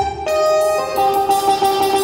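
Live stage music with no singing: an instrumental interlude, a melody of held notes that change step by step.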